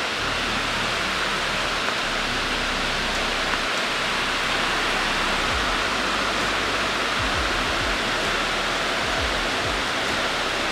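Heavy rain drumming steadily on a metal barn roof, a dense, even hiss that does not let up.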